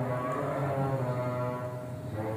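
Several men's voices chanting together in long, steady low notes.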